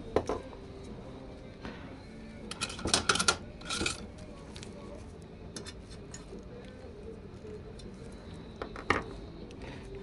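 Hand tools and small metal parts clinking on a workbench. A cluster of sharp clinks about three seconds in comes as a screwdriver is pulled from a rack of screwdrivers, followed by faint ticks as a small screw is worked into a metal bracket on an exhaust heat shield, and one more sharp click near the end.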